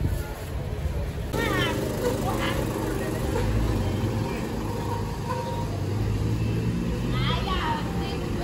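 Street traffic: a car's engine runs close by as a steady low rumble. Short high chirps come through twice, about a second and a half in and near the end.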